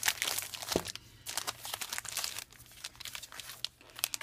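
Plastic packaging crinkling as cellophane-wrapped note cards and blister-packed pens are handled and shuffled on a table, busiest in the first couple of seconds, with a soft knock just under a second in.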